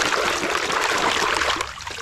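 Muddy water sloshing and splashing in a plastic tub as a small toy excavator is swished back and forth by hand, dying away about one and a half seconds in as the toy is lifted out.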